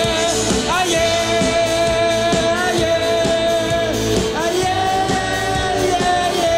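Live rock band with saxophone, electric guitars, drum kit and accordion playing at full volume over a steady drum beat. A lead line of long held notes slides up into pitch about a second in and again about four and a half seconds in.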